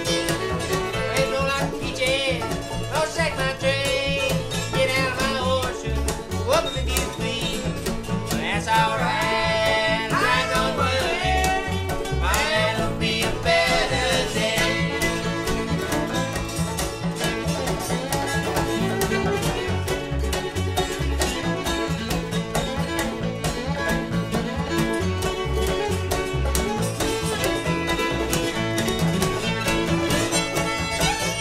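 Old-time string band playing an instrumental passage: a fiddle carries a sliding, wavering melody over strummed guitar and banjo with a steady low beat.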